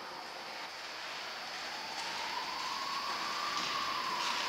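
Steady hiss of room noise in a large church, slowly growing a little louder, with one faint tone gliding slowly upward in pitch.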